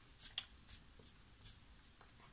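Fingers picking blueberries out of a plastic punnet: faint crackles and light clicks of the thin plastic, the sharpest about half a second in.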